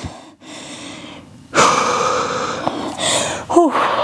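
A woman breathing hard, out of breath after a strenuous workout: a softer breath in, then a long, louder breath out starting about a second and a half in, and a short sound of her voice near the end.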